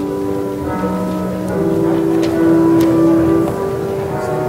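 Church organ playing held chords that change every second or so, growing louder about two seconds in.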